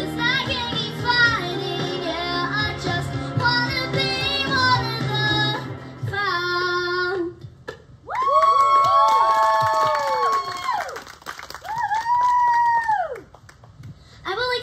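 A girl singing a song into a handheld microphone over musical accompaniment. The accompaniment drops out about seven seconds in, and the song closes with long held notes that fall away in pitch.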